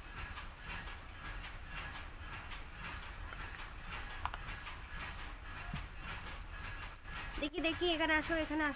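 Quiet room background with faint distant voices and a light click about four seconds in. A woman starts speaking just before the end.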